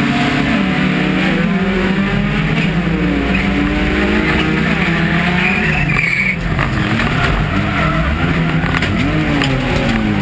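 A jokkis (folkrace) car's engine heard from inside its stripped, caged cabin, revving up and dropping again and again as the driver works the throttle and gears through the race. Near six seconds in there is a short high squeal that ends sharply, fitting the tyres sliding on the track.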